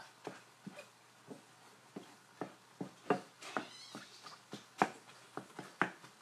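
A wooden spoon tapping and scraping in a metal frying pan while stirring and breaking up ground turkey: irregular sharp knocks about one or two a second, with a brief higher scrape about three seconds in.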